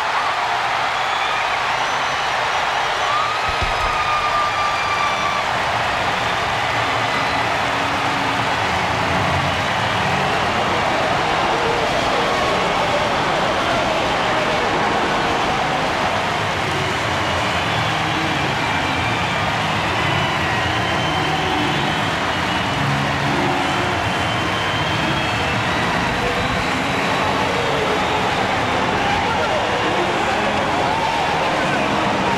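A packed baseball stadium crowd cheering, a loud and steady roar that does not let up, celebrating the home team's walk-off win.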